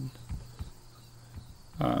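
Quiet pause in a man's talk with a faint steady low hum and a few soft low knocks, then he starts speaking again near the end.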